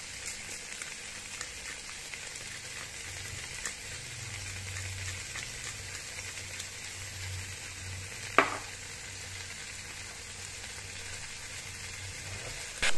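Diced pork, potatoes, carrots and apple sizzling steadily as they fry in a pan, stirred now and then with a wooden spatula. A single sharp knock stands out about eight seconds in.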